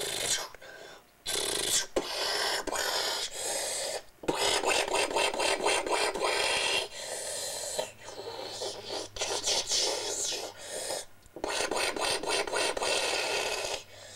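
A child making battle sound effects with his mouth for toy tanks firing: long hissing, rasping bursts of a few seconds each, with short breaks between them.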